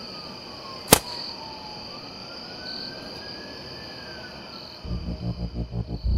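A homemade PVC potato gun firing once: a single sharp bang about a second in, over steady cricket chirping. Pulsing electronic music comes in near the end.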